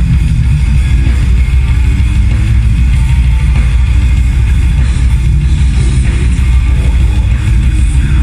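A death metal band playing live and loud through a festival PA: distorted electric guitars, bass and drums. Heard from the crowd, with a heavy, booming low end.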